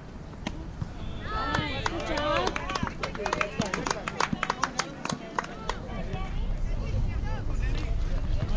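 High young voices shouting and cheering, then a quick run of sharp hand claps, several a second, for about three seconds, the typical sound of a team cheering on its batter from the dugout. Low wind rumble on the microphone builds near the end.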